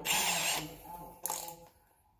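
Milwaukee M18 combi drill's keyless ratcheting chuck being worked onto a 10.2 mm drill bit: a rough burst of ratchet clicks in the first half second, then a second short one about a second and a quarter in.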